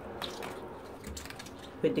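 Faint small clicks and rubbing of a thinned cotton swab scraping dried scouring-powder buildup out of the gap between plastic toilet-seat hinges, with a soft low bump about a second in.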